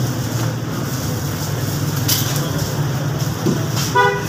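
Steady low mechanical hum, with a butcher's cleaver striking a wooden chopping block faintly about halfway through and sharply near the end, the last strike ringing briefly.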